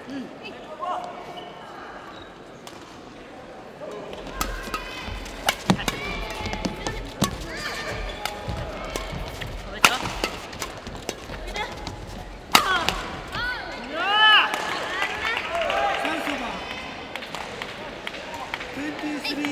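Badminton rally on an indoor court: after a quieter start, sharp cracks of rackets striking the shuttlecock begin about four seconds in, the loudest near the middle, mixed with squeaks of court shoes and voices in the hall.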